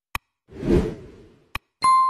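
Stock sound effects for an animated like-and-subscribe reminder: a short mouse click, a whooshing pop, a second click, then a bright bell-like ding near the end.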